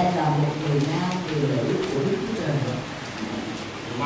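A man's voice talking into a microphone, easing off near the end.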